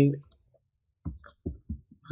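Computer mouse clicking: a quick run of sharp clicks through the second half, as objects are selected in the software.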